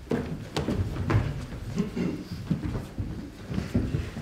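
Irregular footsteps and shuffling of several people moving about on a stage, with a few light knocks.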